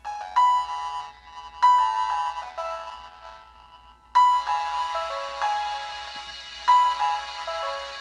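Recorded piano played back through a speaker with a defective budget dome tweeter: notes and chords struck every second or two, each ringing and fading, with little bass. The tweeter distorts on the piano, the sign of a faulty driver.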